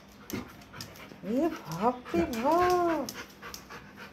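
A dog being stroked makes a few short rising whines and then one longer drawn-out moan, with panting between them.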